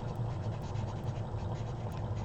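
Handwriting on paper, a soft scratching as a short note is jotted down, over a steady low hum.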